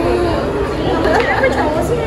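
Several people talking at once: overlapping crowd chatter.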